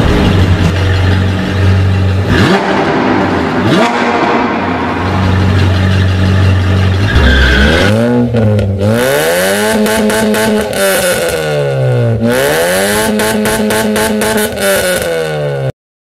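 A sports car engine sound effect. First a steady low drone, crossed by two quick whooshes. About halfway the engine revs up and back down twice, and the sound cuts off suddenly near the end.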